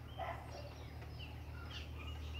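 A few faint, short bird calls over a low steady hum.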